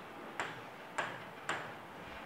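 Three sharp taps of a finger on an interactive smart board's touchscreen while typing on its on-screen keyboard, about half a second apart.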